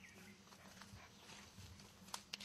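Faint footsteps on a dirt path, a few soft steps over a low steady hum.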